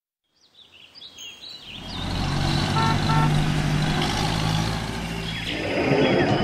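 Cartoon soundtrack ambience. A few birds chirp about half a second in, then a low, steady rumble swells up about two seconds in and holds, with faint chirps still above it.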